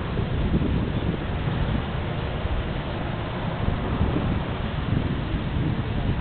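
Wind buffeting the microphone: a steady rushing noise with an uneven low rumble, no distinct events.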